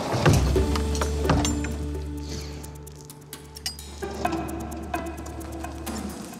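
Background music of sustained low held notes that dip in level around the middle and swell again, with a few light clicks and taps over it.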